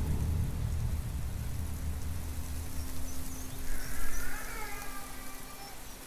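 Dark ambient drone from a horror film soundtrack: a low rumble that slowly fades, with a steady low hum under it. About four seconds in, a faint wavering higher sound rises and falls away.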